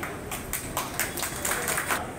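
A small audience applauding, a run of quick claps starting just after the speech ends.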